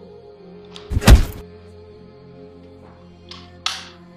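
A single heavy, deep thump about a second in, over steady ambient background music. Two brief softer sounds follow near the end.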